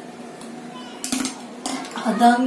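Two short clatters of small hard objects being handled or set down, about a second in and again near the end, over a steady low hum.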